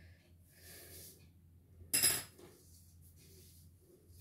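Faint rustling of hands and a plastic ruler on paper, then a single sharp click about halfway through as a pencil is put down on the hard tabletop.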